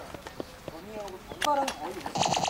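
People's voices talking quietly, with a few short clicks or taps.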